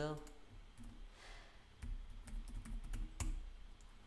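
Computer keyboard being typed on, with a scatter of short, sharp key clicks in the second half and one stronger click a little after three seconds: a web address being typed and entered.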